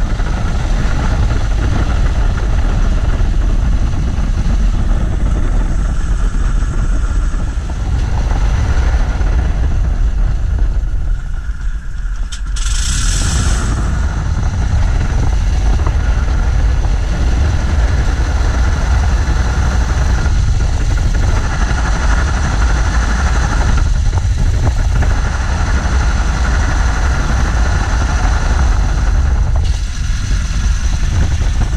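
Fokker Dr.I's 80 hp Le Rhône nine-cylinder rotary engine running on the ground, a loud steady drone that dips briefly about twelve seconds in.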